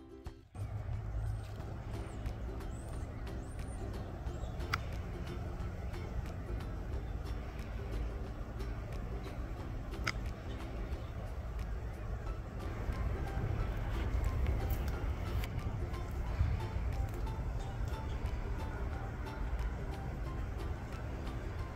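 Steady low rumble of heavy road-work machinery, with faint music over it.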